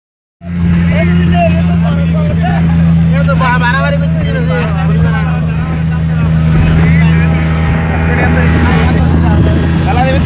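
Speedboat engine running steadily at speed, a loud constant hum under passengers' voices.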